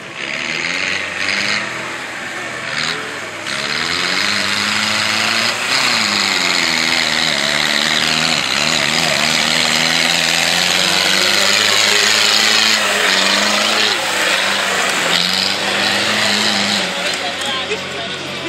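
Fendt tractor's diesel engine working through deep mud, its pitch rising and falling as the revs change, growing louder about three and a half seconds in and staying loud until near the end as it comes close.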